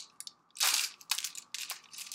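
Syringe packaging being handled and opened by hand: a series of short crinkles and sharp clicks, the longest crackle a little over half a second in.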